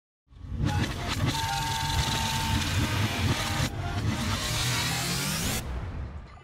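Car engine sound effect used as the intro of a phonk track: the engine runs hard, breaks off briefly about three and a half seconds in, then revs up in a rising sweep that cuts off suddenly just before the end.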